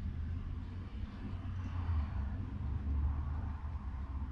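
Düwag GT8S articulated tram running along the line, heard from inside the passenger car as a steady low rumble.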